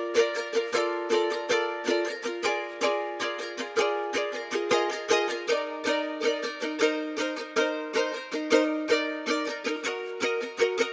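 Solo ukulele picking a repeating pattern in B-flat major, alone with no drums or bass: the stripped-down outro of the beat.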